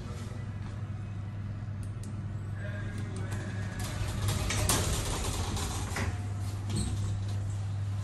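Cargo lift car: a steady low hum inside the car, with its doors sliding shut in a louder noisy rush about halfway through, followed by a couple of sharp clicks from the lift mechanism.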